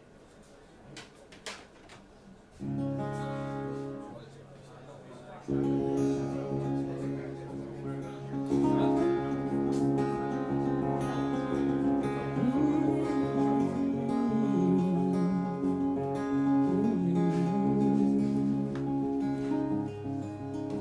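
Acoustic guitar: a few soft handling knocks, then one chord struck and left ringing about two and a half seconds in, and from about five seconds in steady continuous playing. A wordless voice comes in over the guitar in the second half.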